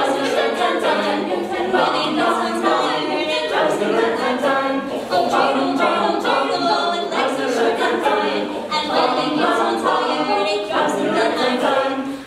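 Mixed-voice a cappella group singing a Chanukah medley, with a female soloist on a microphone in front of the group's vocal backing, no instruments.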